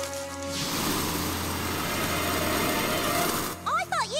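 Cartoon sound effect of a machete hacking through jungle foliage: a loud rush of rustling noise that starts about half a second in and cuts off abruptly near the end, over background music.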